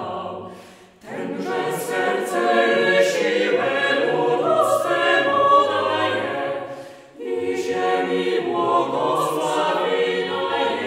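Mixed-voice chamber choir of sopranos, altos, tenors and basses singing a cappella in parts. A phrase dies away about a second in and another around seven seconds in, each time followed by the voices entering again together.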